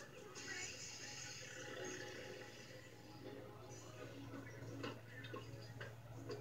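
Cartoon soundtrack playing faintly on a television: background music and sound effects with snatches of faint voices, over a steady low hum.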